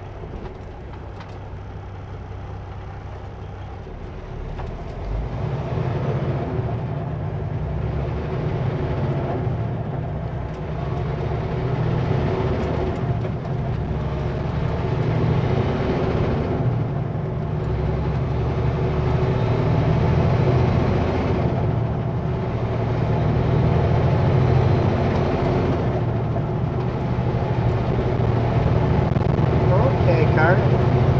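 A Kenworth W900L semi truck's diesel engine idling at a stop, then pulling away about five seconds in and accelerating up through the gears, the sound dipping briefly at each shift, with a faint high whine that climbs in each gear.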